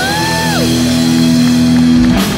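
Live rock band holding a sustained chord, with a high pitch that swells up and then falls away in the first half-second.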